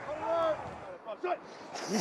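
A man's voice calling out in one drawn-out sound, followed by a quieter stretch with a few short bits of voice.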